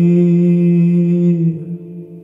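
A male singer holding one long note over acoustic guitar; the note stops about one and a half seconds in, and the guitar rings on, fading.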